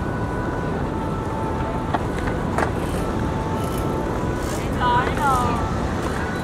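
Steady low outdoor rumble with voices of people in the background, and a short voice sound about five seconds in.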